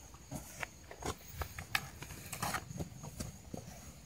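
Puppies moving about on dirt ground, making irregular light clicks, scuffs and scrapes.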